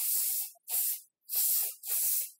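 Aerosol can of hair product sprayed onto the hair in four short bursts of hiss, each about half a second long.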